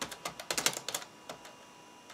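Typing on the keyboard of an IBM ThinkPad 760XL laptop. There is a quick run of key clicks at the start, another run about half a second in, and a single press a little after the middle.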